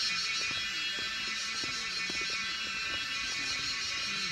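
Steady high-pitched buzzing of an insect chorus, unchanging throughout, with faint voices underneath.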